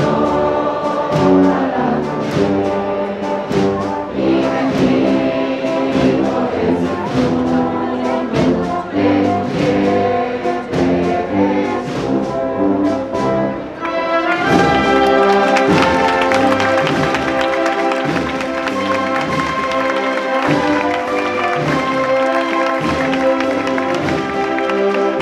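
Processional marching band playing a slow march on brass with steady drum beats. About halfway through, the band swells fuller and brighter.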